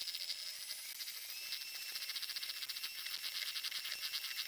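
Electric hand mixer beating egg whites with sugar on medium-high speed toward a meringue. It is heard as a faint, high-pitched whine with a fast, even flutter, and the pitch rises slightly about a second in.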